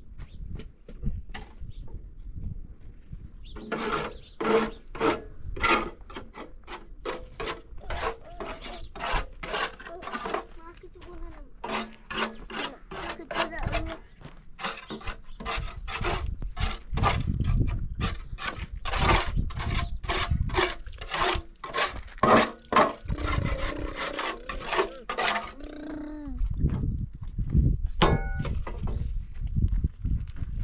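Shovel scraping and mixing in a metal wheelbarrow, a rapid run of repeated strokes that stops a few seconds before the end.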